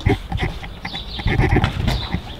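A series of small metallic clicks and knocks from a front door's lock and doorknob being worked by hand, over low rumbling handling noise.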